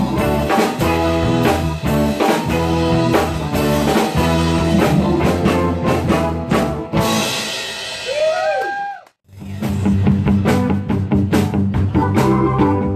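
Live rock band playing an instrumental passage on drum kit, electric guitars and keyboards. About eight seconds in, a few notes glide up and fall back. Then the sound cuts out abruptly for a moment about nine seconds in, and the band comes back in with a steady beat.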